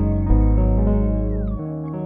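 Instrumental outro music: sustained chords over a deep bass note that stops about a second and a half in.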